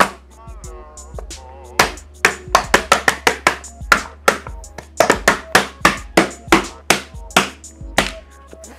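Open hand repeatedly slapping Jessup griptape down onto a skateboard deck to make it stick: a run of sharp slaps, about three or four a second, starting about two seconds in and stopping just before the end.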